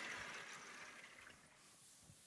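Chalkboard being wiped with an eraser: a faint, soft rubbing hiss that fades after about the first second.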